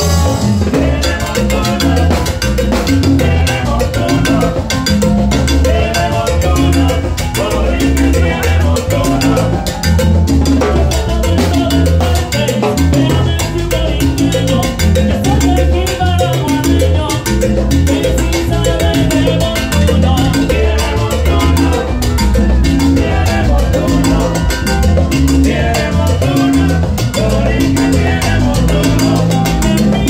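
Live salsa orchestra playing loudly, with a heavy bass line and busy percussion.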